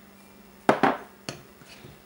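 Metal spoon knocking against a glass mixing bowl while baking soda is tipped in: two sharp clinks in quick succession about two-thirds of a second in, then a lighter tap.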